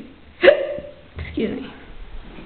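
Two short, wordless vocal sounds from a person: a sudden loud one about half a second in, then a softer one about a second later.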